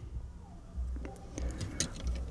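Faint handling of a hard-plastic Transformers Soundwave action figure, with a few light clicks about a second in and near the end as the small Laserbeak figure is fitted onto its shoulder.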